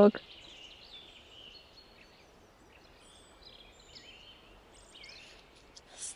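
Faint, scattered bird chirps and calls over quiet outdoor background.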